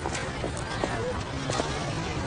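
Footsteps of two people walking on pavement, short irregular steps, over a low murmur of background voices.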